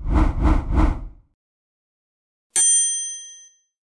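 Edited intro sound effects: three quick thumps in the first second, then a single bright bell-like ding about two and a half seconds in that rings out and fades over about a second.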